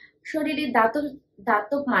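Only speech: a woman speaking Bengali in two short phrases, with a brief pause about a second in.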